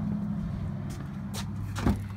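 A pickup truck's front door is pulled open: a faint click, then a sharper latch click and clunk near the end, over a steady low hum.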